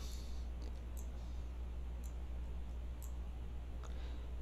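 Computer mouse clicking a few times, about once a second, over a steady low hum.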